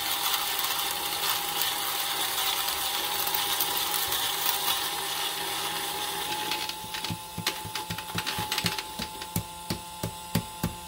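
StarSeeker Edge electric coffee grinder's motor running as its burrs grind a single dose of whole beans at a coarse filter setting: dense crunching for about seven seconds over a steady motor hum. The crunching then thins to scattered clicks as the chamber empties, while the motor keeps running.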